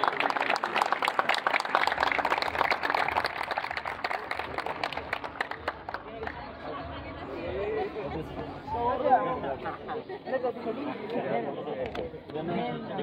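A small crowd clapping with a hubbub of voices; the clapping stops about halfway through and the mixed talk carries on.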